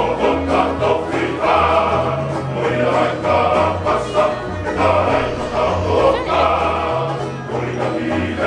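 Tongan hiva kalapu string band: a men's choir singing in harmony in phrases of a second or two, over strummed acoustic guitars and a steady bass line.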